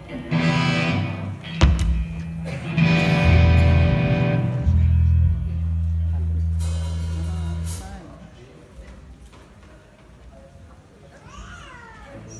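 Electric bass guitar through a stage amplifier playing a few long, low held notes, which stop about eight seconds in. Higher pitched sounds ring over the first few notes.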